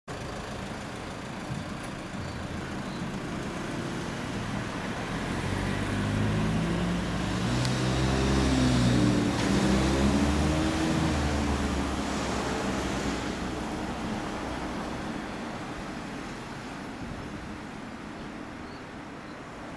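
A motor vehicle passing by: its engine grows louder to a peak about nine seconds in, its pitch bending as it goes past, then fades slowly away over a steady traffic hum.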